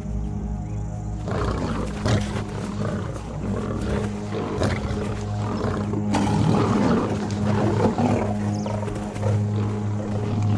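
Male lions growling and snarling at each other over background music with a steady low drone. The growls come in about a second in.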